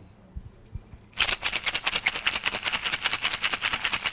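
Ice cubes rattling hard in a cocktail shaker as it is shaken vigorously, a fast, even rattle that starts a little over a second in.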